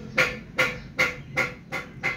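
A kitten mewing in a quick series of five short, evenly spaced calls, about two and a half a second.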